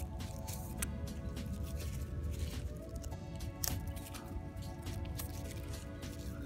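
Background music with steady held tones, over the intermittent crinkle and rustle of thin plastic film as protective sleeves are pulled off a drone's propellers and crumpled by hand.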